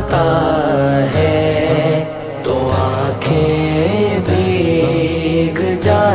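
Wordless vocal interlude of a naat: layered voices chant a melody over a low sustained drone, with a short dip in loudness about two seconds in.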